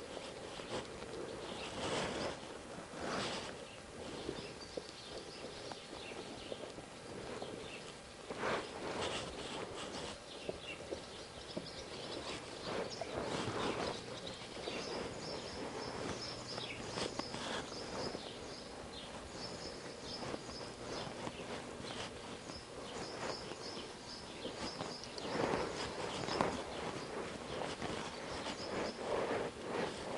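Horse walking under a rider on soft arena dirt: muffled, irregular hoofbeats and light knocks.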